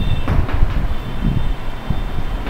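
Chalk scratching in short strokes on a blackboard as words are written, over a loud steady low rumble.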